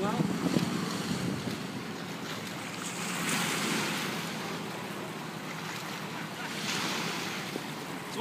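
Small waves breaking and washing over a rocky shoreline, surging about three seconds in and again near the end, with wind buffeting the microphone.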